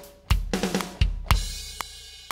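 EZDrummer virtual drum kit played live from the pads of an Akai MPK Mini: heavy kick drum hits with snare and hi-hat, ending on a crash cymbal struck a little past halfway that rings on.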